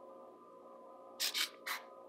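Quiet room tone with a faint steady hum, broken by three short hissing sounds in the second half.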